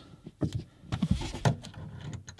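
Screwdriver working a small screw into the sunroof trim panel: a few light clicks and scrapes, with a short rustle about a second in.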